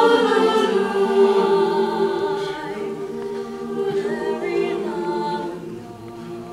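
Mixed choir of male and female voices singing a slow song in held chords, the voices easing off in loudness after about two seconds.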